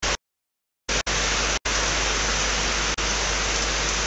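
Loud, steady hiss of static from a security camera's audio feed, cutting in and out abruptly: a short burst at the start, then from about a second in a long stretch of hiss broken by two brief dropouts.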